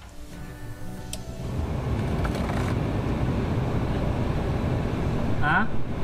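The heater blower fan of a 1967 Cadillac Coupe DeVille comes on about a second and a half in and runs steadily, with air rushing out of the dash vents.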